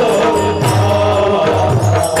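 Devotional group chanting in the Warkari bhajan style: men singing together to brass hand cymbals (tal) struck in a steady rhythm, with a mridang drum beneath.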